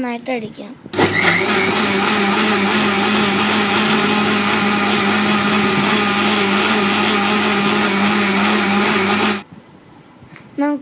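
Preethi mixer grinder running with its steel jar, blending a milkshake. It starts about a second in, runs steadily with a strong hum, and cuts off suddenly shortly before the end.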